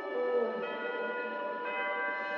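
Beatless intro of a trance remix: a stack of held, bell-like synth tones ringing over a pad, with a slow melody moving underneath.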